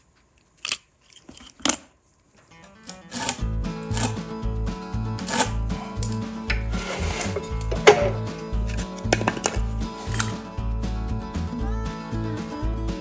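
A few short scrapes of a razor blade shaving a pencil, then background music with a steady beat comes in about three seconds in and carries on.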